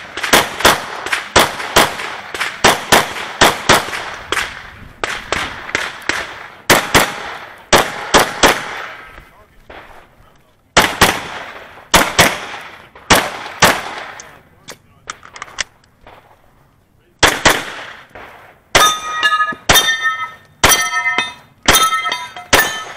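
9mm Smith & Wesson M&P Pro pistol fired in quick pairs and strings, with short pauses while the shooter moves between positions. Near the end the shots hit steel targets that ring after each hit.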